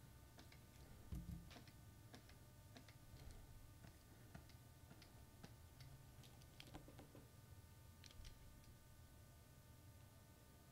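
Near silence: faint room hum with soft, irregular clicks, a few spread across each second, from working the computer's controls while animating.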